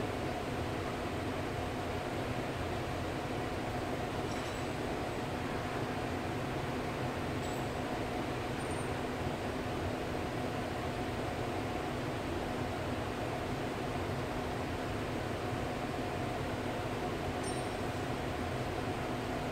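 Steady hum and hiss of workshop machinery, with two low steady tones running under an even noise and a few faint small ticks.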